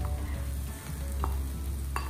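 Sautéed cabbage and carrot sizzling in hot oil in a frying pan as a load of sliced mustard greens is tipped in on top, with two light knocks, about a second in and near the end.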